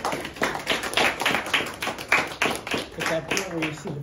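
Audience applauding, with voices talking underneath; the clapping thins out toward the end.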